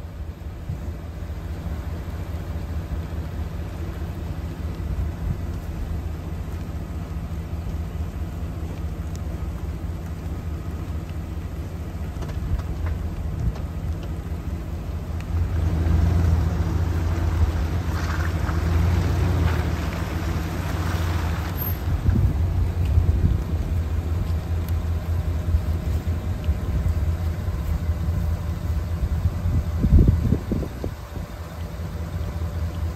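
Utility vehicle's engine running steadily, louder from about halfway through as it moves across the pasture.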